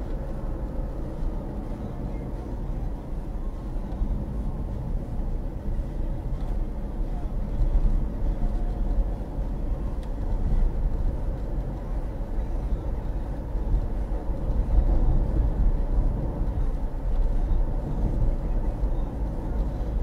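Steady low rumble of a car's engine and road noise, heard inside the cabin.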